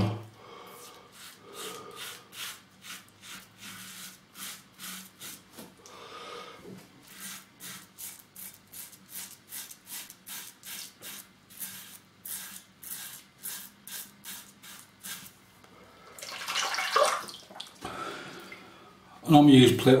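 Rockwell 6S double-edge safety razor on its mildest plate one, with a Wilkinson Sword blade, scraping through lathered three-day stubble in short, quick strokes, about two or three a second.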